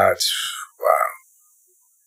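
A man's voice trailing off mid-sentence: a breathy exhale, then one short vocal sound about a second in.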